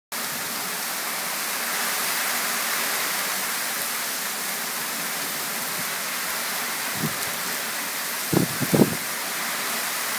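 Heavy rain pouring down in a thunderstorm, a steady hiss of rain on a wet street and cars. A few brief low thumps come near the end, the loudest two close together about eight and a half seconds in.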